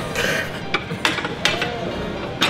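Breathless laughter from men at a bench press, with a few short, sharp clicks of metal.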